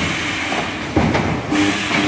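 An EPS 3D wire mesh panel welding machine working, a continuous mechanical clatter with a sudden louder clunk about halfway through as its welding heads act on the panel's wires.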